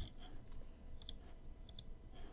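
Several sharp clicks from a Logitech wireless computer mouse as an object is selected on screen; two quick pairs of clicks come in the second half.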